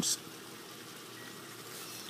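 Faint, steady outdoor background noise, right after a spoken word ends.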